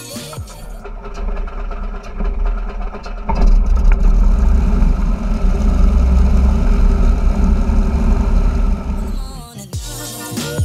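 Engine start of a Cessna 172 Hawk XP's six-cylinder Continental engine: a few seconds of cranking, then the engine catches about three seconds in and runs with a steady low drone. Background music fades out at the start and comes back near the end.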